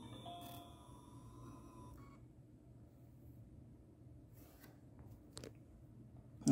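Kodak EasyShare Z760 digital camera powering on: a faint electronic start-up chime of a few short tones at different pitches during the first two seconds, then a couple of faint clicks near the end.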